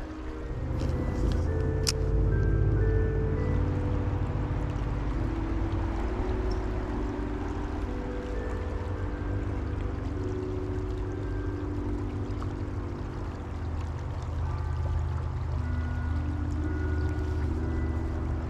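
Background music of held, changing chords with short bell-like notes, over the steady rush of running stream water.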